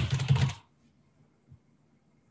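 Typing on a computer keyboard: a quick run of keystrokes in the first half second, then it stops.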